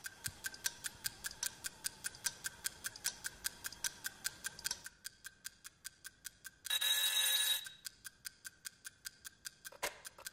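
Mechanical alarm clock ticking quickly and steadily, several ticks a second, with a short burst of the alarm ringing, under a second long, about seven seconds in. A sharper click comes near the end.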